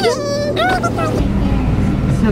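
Car engine rumble heard from inside the cabin, a low drone that comes up about a second in, under people's voices.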